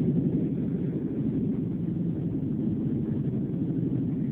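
Steady low road and engine noise of a moving car, heard from inside the cabin with the window up.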